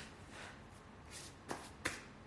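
Soft rustling and brushing from hand movements close to the microphone, with two sharp taps about a second and a half in.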